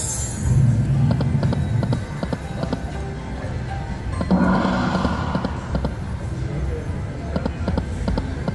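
Dancing Drums slot machine playing its free-games bonus music and sound effects as the feature starts and the reels spin, with many short clicks through it. The music changes about four seconds in.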